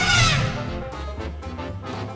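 A loud animal-call sound effect that rises and then falls in pitch, over in about half a second, followed by background music.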